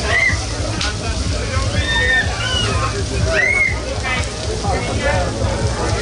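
Beef ribs, steaks and sausages sizzling on a large open grill, a steady crackling hiss, with people talking nearby and a low hum underneath.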